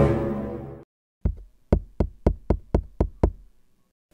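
A short musical sting swells and fades out in the first second, then someone knocks rapidly on a door, about nine sharp knocks at roughly four a second.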